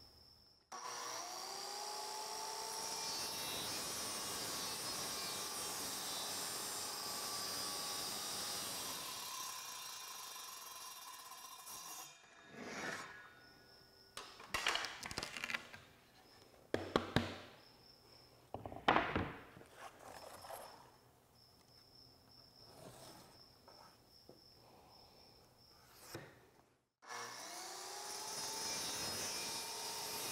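Handheld circular saw spinning up with a rising whine about a second in, then cutting a gentle curve through mahogany plywood for about eleven seconds before it stops. Irregular knocks and clatters of plywood pieces being handled follow. The saw spins up and cuts again near the end.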